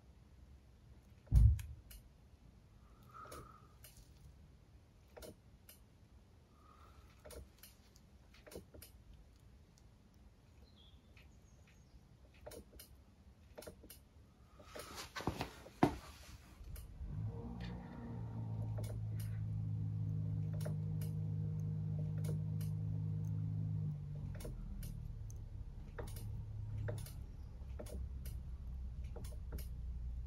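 Scattered light clicks and knocks as a motorcycle's front brake lever is pumped to build pressure in the caliper, with one heavy low thump about a second and a half in. About two-thirds of the way through, a steady low hum comes in and carries on, dropping slightly near the end.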